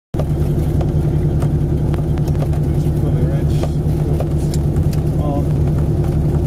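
The twin four-cylinder Lycoming piston engines of a Beechcraft BE-76 Duchess running steadily, a constant low drone heard from inside the cabin, starting a moment in.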